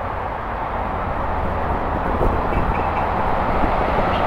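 Steady noise of highway traffic going by, an even wash with no breaks.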